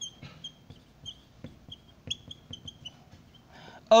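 Dry-erase marker squeaking on a whiteboard while writing: about a dozen short, high squeaks in quick strokes, with faint tapping of the marker tip.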